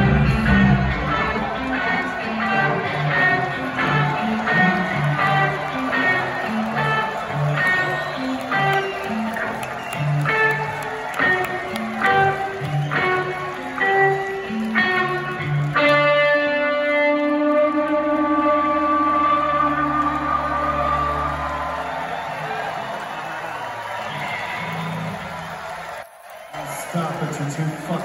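Live rock band, amplified electric guitars and drums, playing a steady rhythmic pattern heard from the audience. About halfway through it ends on a final held chord that rings out and fades over several seconds, followed by crowd noise.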